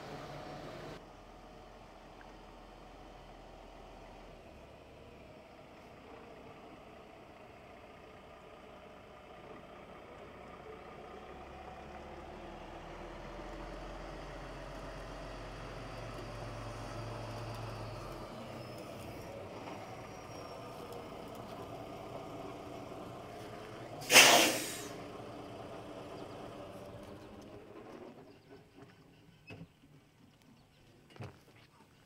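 A Peterbilt 389 semi truck's diesel engine runs at low speed as the truck pulls across the yard, getting somewhat louder midway. About three-quarters of the way through comes one short, loud hiss of air as the air brakes are set.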